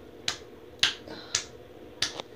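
A hand slapping a stomach: three sharp slaps about half a second apart.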